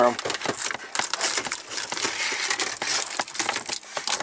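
Clear plastic wrap on a car stereo head unit crinkling, with many small clicks and knocks as the unit is handled and pushed into the dash opening.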